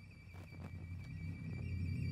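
String orchestra holding a low sustained chord that swells steadily louder, with a thin high note held above it.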